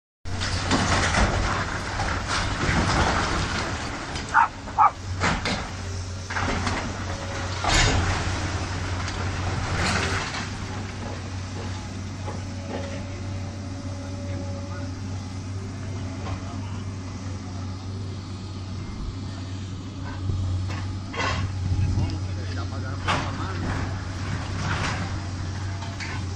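Hydraulic excavator's diesel engine running steadily, with scattered sharp knocks and crashes of demolition work and voices of onlookers talking.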